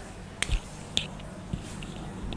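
A few sharp clicks and soft knocks, about half a second apart, over quiet small-room tone: handling noise as someone turns to a whiteboard and lifts a marker.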